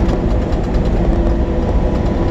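Steady engine and road rumble inside a semi-truck's cab, with a few held steady tones over the low drone.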